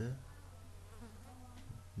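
Steady low electrical hum, a mains buzz picked up by the recording microphone.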